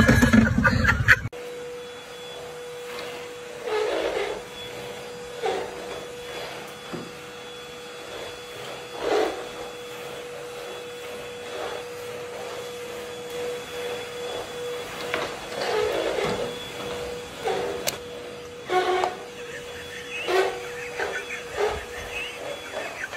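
A canister vacuum cleaner running with a steady hum, with scattered short louder bumps over it. It follows an abrupt cut from a brief louder, noisier passage about a second in.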